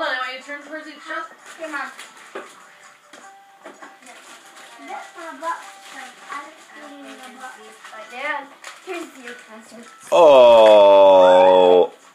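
Voices talking quietly among the family, then about two seconds from the end a loud, held vocal cry close to the microphone, slightly falling in pitch, that cuts off suddenly.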